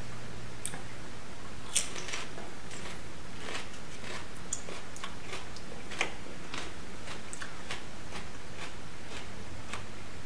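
Raw Aji Limon pepper being bitten and chewed: irregular small crunchy clicks, with sharper ones about two seconds in and about six seconds in, over a steady low room hum.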